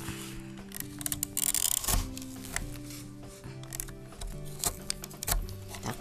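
Background music with held notes, overlaid by several sharp clicks of a hand-held star-shaped paper punch being pressed through paper.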